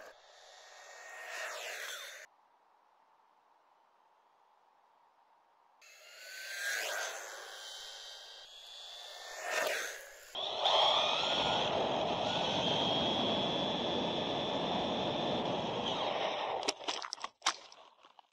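Brushless-motored RC buggy running at full throttle on tarmac: its high motor whine and tyre noise rise and fall in pitch as it speeds past, then a long loud stretch of steady whine and road noise. A few sharp knocks near the end.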